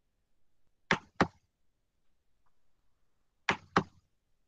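Sharp clicks from the computer running the slide presentation, close to the microphone. They come in two pairs, one about a second in and one near the end, with the two clicks of each pair about a quarter second apart.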